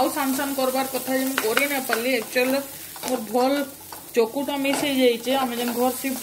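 Chopped onions sizzling in a nonstick frying pan as they are stirred with a wooden spatula, with a voice going on over the frying.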